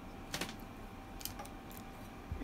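A few light clicks and ticks from badminton string being handled on a racket mounted in a stringing machine: one sharper click about a third of a second in, then two fainter ones a second later.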